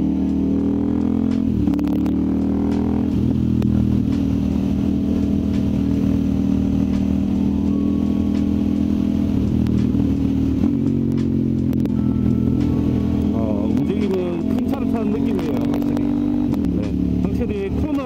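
KTM 890 Duke's parallel-twin engine running under way at steady cruising revs. Its pitch dips briefly a couple of times, then wavers up and down near the end as the throttle is rolled on and off.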